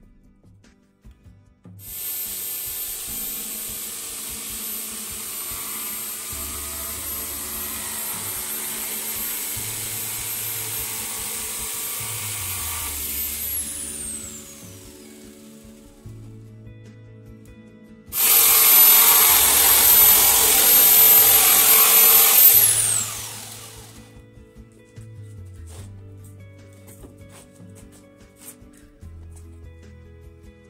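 Electric jigsaw cutting through a wooden board twice: a long cut of about twelve seconds, then a shorter, louder one of about four seconds, each ending with the motor's whine falling away as it winds down. Background music runs underneath.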